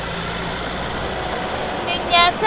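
Steady rumble of a motor vehicle running close by, engine and road noise without a clear start or stop. A voice begins speaking near the end.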